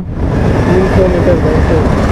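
Motorcycle running in second gear in slow traffic, a steady low rumble of engine and road on the handlebar-mounted microphone, with a voice faintly in the middle.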